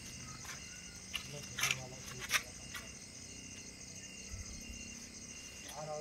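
Crickets chirping steadily in a high, rapidly pulsing trill, with a few sharp clicks between about one and two and a half seconds in.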